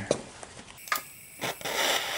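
A handheld propane torch being lit: two sharp clicks, then the hiss of the gas and flame starting about three-quarters of the way in.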